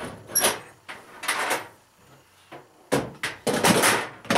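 Handling noise from someone moving gear about: separate bursts of rustling and clatter, loudest near the end, where things are being dropped.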